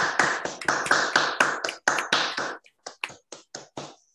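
Applause over an online video call: a quick, steady run of hand claps that thins to a few separate claps after about two and a half seconds and stops near the end.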